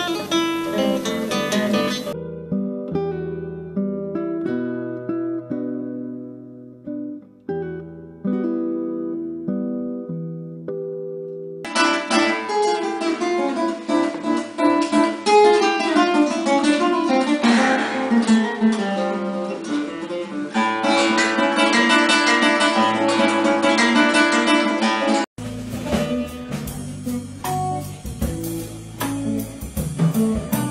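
Solo classical guitar, a nylon-string guitar played fingerstyle, in a run of excerpts that cut abruptly from one to the next. About 25 seconds in it cuts to a band playing.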